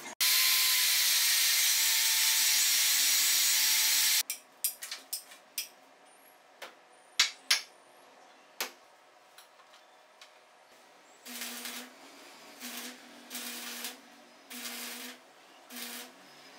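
A power tool working steel rebar: it runs steadily for about four seconds and stops, then comes a scatter of sharp metal clinks, and near the end a series of short bursts, each under a second long.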